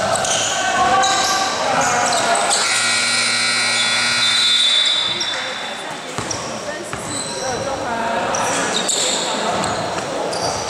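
Scoreboard buzzer sounding once for about two seconds, a steady, buzzy tone that signals the end of the game. Around it are voices and basketball bounces, echoing in a large gym.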